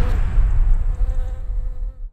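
A bee buzzing: a steady, pitched buzz over a deep low rumble, both fading out at the very end.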